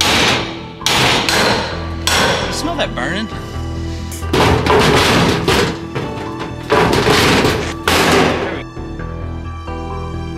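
Hammer striking a crowbar wedged in the door seam of a metal safe, giving sharp metallic blows near the start, then longer stretches of scraping and grinding as the bar pries at the steel door, twice. Background music plays under it.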